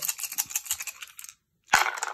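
Wooden rune tiles and small stones rattling as they are shaken in cupped hands, a fast run of clicks. Then a short pause, and the runes are cast onto a wooden-rimmed board, landing with a sharp clack and a brief clatter near the end.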